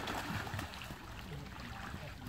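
Faint water sounds: low splashing and trickling around an inflatable paddling pool.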